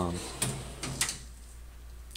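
A few short knocks and clicks of a small workbench drawer being pushed shut, in quick succession within the first second.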